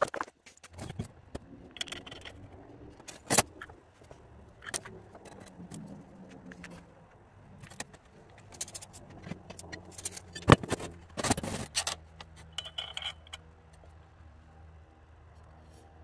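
Metal hand tools, spanners and sockets, clinking and knocking as they are handled and set down on a workbench. Scattered light clicks, with sharper knocks about three and a half seconds in and again about ten and a half seconds in.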